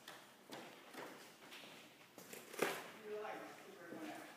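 Footsteps on a hard floor, about two a second, with one louder knock about two and a half seconds in. A brief voice near the end.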